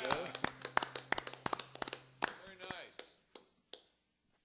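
A few people clapping at the end of a solo acoustic guitar song, while the last guitar chord rings out and fades over the first two seconds. The claps thin out and stop shortly before the end.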